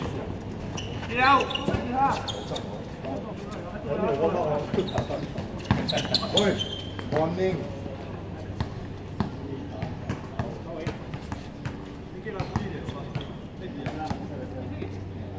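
A basketball bouncing on an outdoor hard court during a pickup game, with short sharp knocks scattered throughout. Players' voices call out over it, loudest about a second in and again around six seconds.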